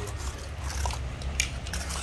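Corded electric impact wrenches being handled and set down on a cardboard sheet: a few light knocks and rustles, the clearest knock about one and a half seconds in, over a steady low hum.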